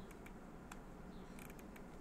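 Quiet room tone with a low steady hum and a few faint, sharp clicks of a computer mouse as CT slices are scrolled through.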